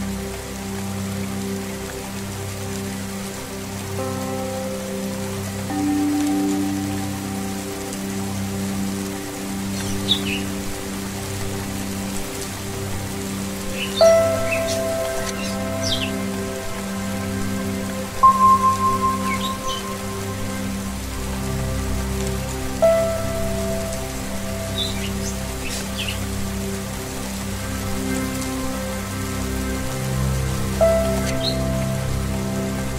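Steady rain falling on a wet surface, under slow meditative music of sustained low tones and struck singing bowls that ring out and fade, the loudest strikes about a third and halfway in. Short high bird chirps come now and then through the second half.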